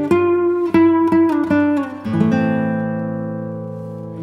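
Background music on acoustic guitar: a quick run of plucked notes, then a chord struck about halfway through that rings on and slowly fades.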